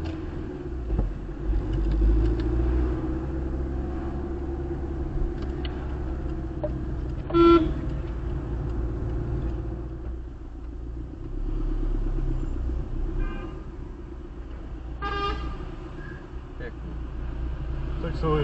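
Steady engine and tyre rumble of a car driving, heard from inside the cabin. About seven and a half seconds in comes a short car-horn toot, the loudest sound; a second brief pitched sound follows near the end.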